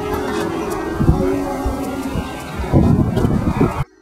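Background music over rough wind noise on the microphone with low knocks, which cuts off suddenly shortly before the end.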